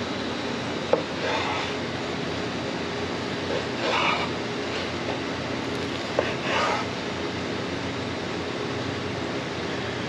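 A large kitchen knife crunching through the crisp flour-and-cornstarch crust of fried pork chops on a wooden cutting board: a few short crunches, about a second in, at about four seconds and near seven seconds, with a couple of sharp taps of the blade on the board. A steady hum runs underneath.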